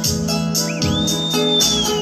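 Live band playing a song intro: guitar and held keyboard notes over an even drum beat with hi-hat ticks. A single long, high whistle rises before the first second, holds, and falls away near the end.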